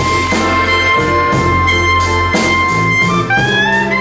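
Live blues band playing, with a clarinet holding one long high note over a steady drum beat and bass, then sliding upward in pitch near the end.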